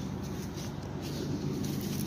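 A steady low hum with a faint rustling haze over it, unchanging throughout.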